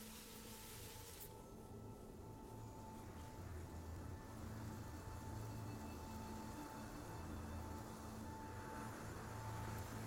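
Quiet, suspenseful film underscore: a low sustained drone with a thin high held tone, slowly growing louder over a faint steady hiss.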